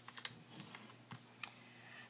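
Faint crackles and light taps of paper being folded and pressed flat by hand: a few short, separate clicks.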